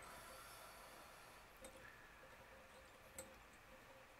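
Near silence: faint room tone with two small, faint ticks, the first a bit over one and a half seconds in and the second about three seconds in.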